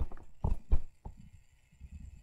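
A stylus tapping on a drawing tablet: three soft knocks in the first second, the second two about a third of a second apart, then only faint low handling noise.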